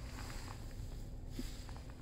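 Nissan Qashqai 1.6 petrol four-cylinder engine idling, heard as a faint, steady low hum from inside the cabin.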